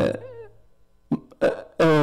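Speech only: a man preaching into a microphone, a phrase trailing off with a short echo, a pause of about a second, then a couple of short syllables and his speech resuming near the end.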